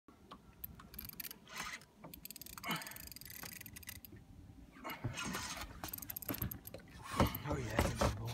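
Indistinct voices mixed with scattered clicks and rattles.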